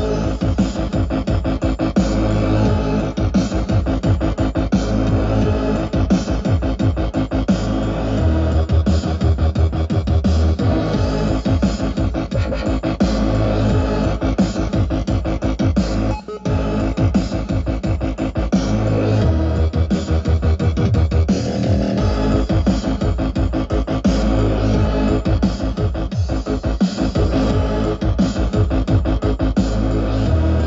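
Dubstep mixed live by a DJ on turntables and played loud over a sound system: dense electronic music with heavy bass and a driving beat, with one brief dropout about sixteen seconds in.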